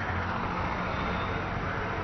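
Steady background road-traffic noise: a low hum under an even hiss, with no single event standing out.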